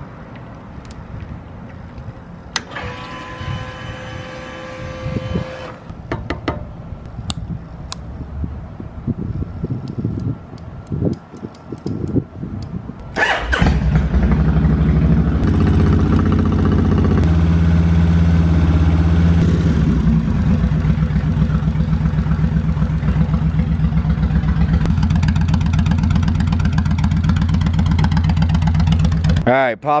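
Liquid-cooled V-twin cruiser motorcycle engine starting about halfway through, then idling steadily until just before the end.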